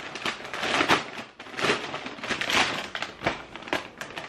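Plastic wrapping crinkling and rustling in irregular bursts as a package is unwrapped by hand.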